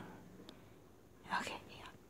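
A person's brief whisper about one and a half seconds in, otherwise a quiet room with one faint click.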